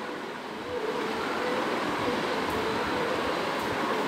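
Steady mechanical hum of background machinery, even and unbroken, with a faint held tone in it.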